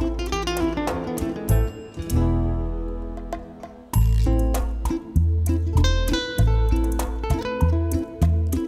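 A rumba song playing back from a mix: plucked guitar over held bass notes, with the kick drum not yet in. The music thins out in the middle and a strong bass note comes back about four seconds in.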